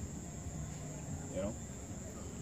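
Crickets chirping in a steady, unbroken high trill.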